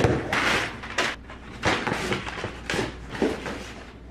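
Packing tape ripped off a cardboard shipping box and the flaps pulled open: a run of irregular tearing and rustling, loudest in the first second.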